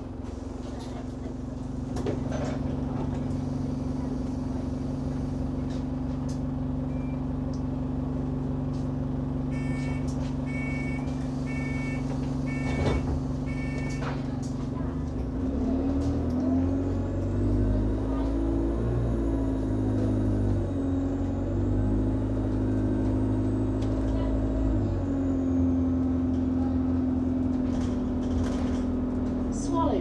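Alexander Dennis Enviro200 Dart single-deck bus heard from inside the saloon: the diesel engine runs steadily at first, with a run of short high beeps partway through. About halfway the engine revs up and its pitch rises and falls through the gears as the bus pulls away.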